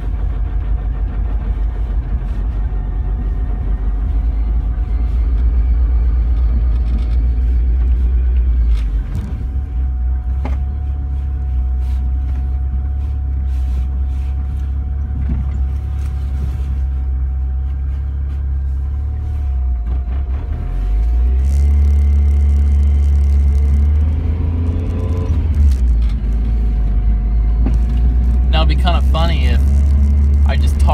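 Vehicle running down the road, heard from inside the cabin: a steady low engine and road rumble that drops about nine seconds in and rises again a little after twenty seconds, with a faint steady whine underneath. A man's voice is heard near the end.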